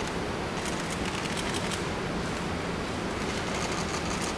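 Press photographers' camera shutters clicking in quick, scattered runs over a steady background hiss.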